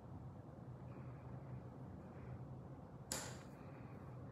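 Faint scratching of a watercolour pencil colouring on paper over a low room hum, then about three seconds in a short, sharp clatter of pencils moved on the tabletop.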